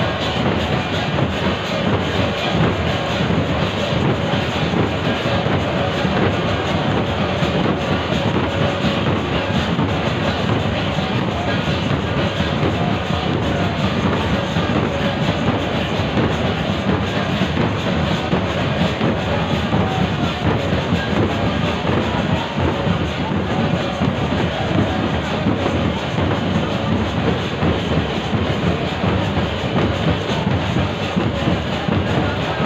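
Loud, continuous rhythmic drumming and clanging metal percussion over the noise of a dense crowd.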